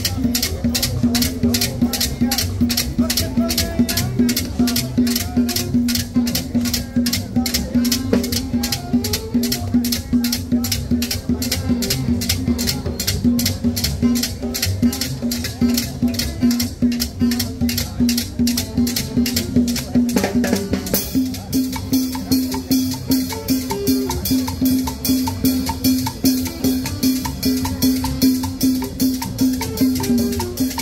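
Upbeat Latin dance music with a fast, steady percussion beat and a sustained low note underneath, played for dancing. The arrangement changes about two-thirds of the way through.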